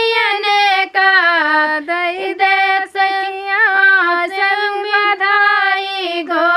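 Two women singing a Vindhya (Bagheli) dadar folk song together, unaccompanied, in phrases of long held and sliding notes with short breaths between them.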